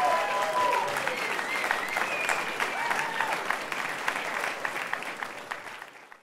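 The band's last held chord dies away within the first second, and the audience applauds, with a few cheers rising over the clapping. The applause fades away toward the end.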